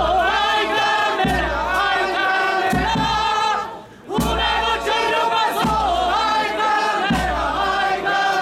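A group of voices singing together in chorus, breaking off briefly about halfway through and then starting again.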